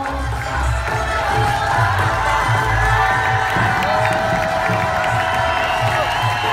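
Music with a steady beat playing over a large crowd cheering and shouting.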